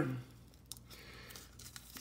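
Faint crinkling of a paper creamer packet being handled and emptied into a cup, with a sharp tick about three-quarters of a second in.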